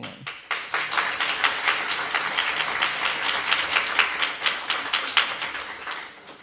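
Audience applauding, a steady patter of many hands clapping that tapers off near the end.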